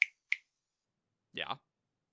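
Two short sharp clicks a third of a second apart, then a brief quiet 'yeah' from a man's voice over near silence.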